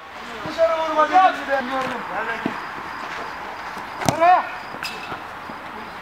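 Players' voices calling across an outdoor football pitch, with a short shout and a sharp knock about four seconds in, over faint steady outdoor noise.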